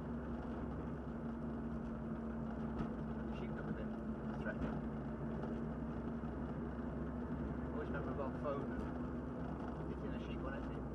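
Triumph TR7 engine running at a steady, light cruise, heard from inside the cabin with tyre and road noise. Its steady hum drops away near the end.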